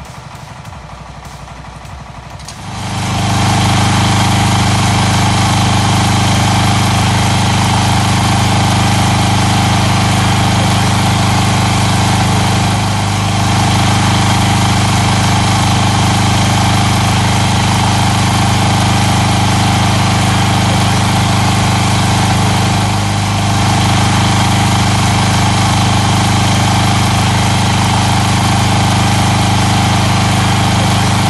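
Small petrol generator running steadily under load, powering a borehole's submersible pump while water flows out. It comes in loudly about two and a half seconds in, dipping briefly twice.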